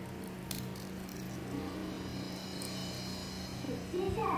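A steady low hum, with a few faint crackles as the shell is peeled off a hard-boiled egg by hand.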